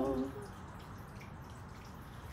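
A four-voice a cappella choir's chord breaks off about a third of a second in, then a pause between sung phrases with only faint outdoor background noise.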